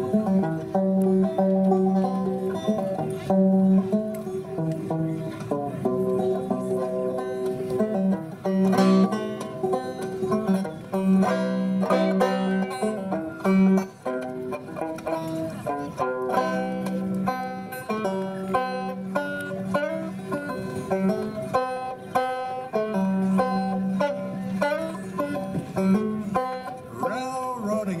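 Solo banjo played in a traditional old-time style: a steady run of plucked notes over a recurring low note, with no singing yet.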